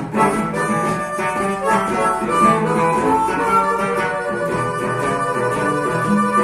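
Harmonica playing a blues solo over acoustic guitar accompaniment.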